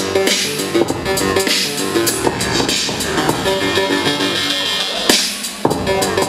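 Hip-hop music with a steady beat and a repeating melodic figure, played for the dancers; the bass drops out briefly a little after five seconds in.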